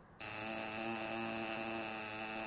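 Tattoo machine buzzing steadily as its needle traces a line into rawhide. The buzz starts a moment in and then holds an even pitch.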